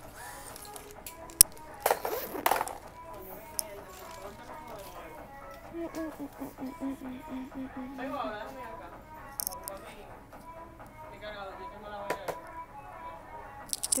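Background music with singing and faint voices, over the handling of clothes at a counter: a burst of rustling about two seconds in and a few sharp clicks.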